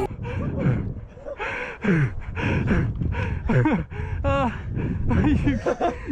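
A man's voice without words: gasps, panting and short cries that jump up and down in pitch, as from a startled player catching his breath.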